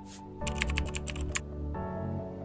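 Computer keyboard typing sound effect: a quick run of about a dozen key clicks lasting about a second, over steady background music.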